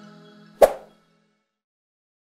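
Outro music fading out, with one short pop sound effect a little over half a second in, as the subscribe button on the end card is clicked.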